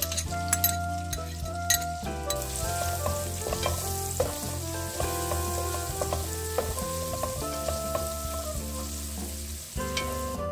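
Food sizzling as it fries in a hot pan, with sharp crackling pops in the first couple of seconds and a steady sizzle after that, over background music.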